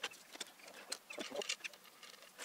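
Light, scattered metallic clicks and ticks as an adjustable handlebar riser is slid onto a bicycle's steerer tube and a multitool is brought to its bolts. A few short bird calls sound faintly behind it.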